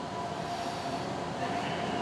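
Steady background hum with two faint held tones and no other events.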